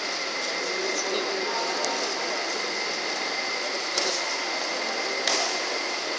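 Badminton rackets hitting a shuttlecock: a few sharp taps, the loudest about four and five seconds in, over the steady hum of an indoor sports hall with a faint constant whine.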